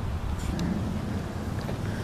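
Wind buffeting the microphone: a steady low rumble.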